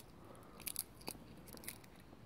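Faint crisp crackles of a fresh bay laurel leaf being crushed and torn between the fingers: a few short, separate crunches.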